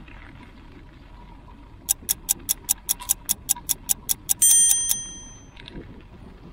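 A run of sharp, evenly spaced ticks, about five a second for some two and a half seconds, ends in a single bright bell ding that rings out and fades within half a second.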